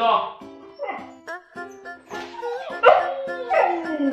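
A dog giving several short woofing barks, protesting at being made to wait for a treat on the floor, over steady background music.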